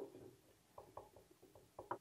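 A felt-tip marker writing, heard as a string of faint, short clicks and taps in quick succession in the second half, against near silence.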